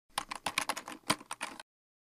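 Typing sound effect of keys on a computer keyboard: a quick run of about a dozen clicks lasting a second and a half, then it stops suddenly.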